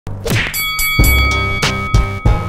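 Intro logo sting of heavy hits over music, the strongest about a second in and two more near the end, with a high ringing tone held underneath.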